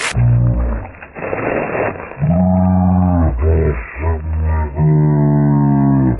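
A dubbed-in sound clip, narrower in range than the trail audio around it, of low, drawn-out tones with strong overtones. Several come in a row, the longest lasting about a second, with a short noisy stretch about a second in.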